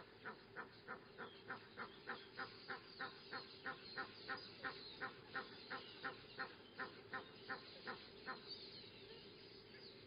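A bird calling in a fast, regular series of short calls, about three a second. The calls grow louder towards the middle and stop a little after eight seconds in.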